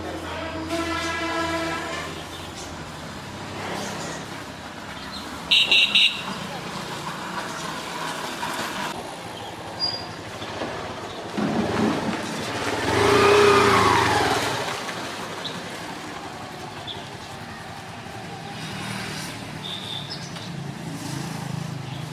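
Roadside traffic sound: a horn toots three short times, and about halfway through a vehicle passes, its sound swelling and then fading.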